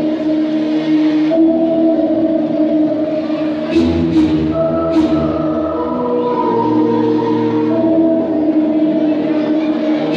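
Chilean folk dance music with singing: long held notes that change every second or so, with a few sharp knocks around the middle.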